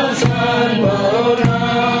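A group of voices singing a song together, choir-like, over a steady beat a little under twice a second.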